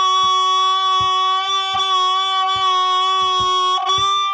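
Blues harmonica played cupped in the hands, holding one long note for over three seconds and changing notes near the end, over a soft, steady low beat.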